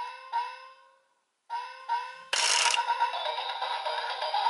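Electronic sound effects from the DX Tiguardora toy's speaker: a two-note chime, then the same chime again about a second and a half later. About two seconds in there is a short noisy burst, and a music track starts and keeps playing.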